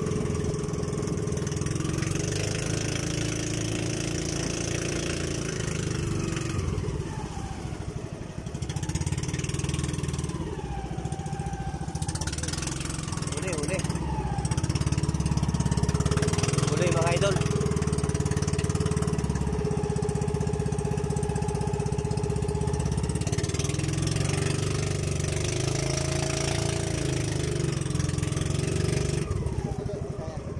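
Engine of a bamboo-outrigger fishing boat running steadily while under way, with water rushing past the hull; it grows a little louder about halfway through.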